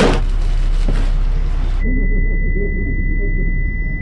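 Muffled, indistinct chatter under a steady high-pitched ringing tone, a film's simulation of impaired hearing. A sudden burst of hiss covers the ringing for the first two seconds or so, then cuts off.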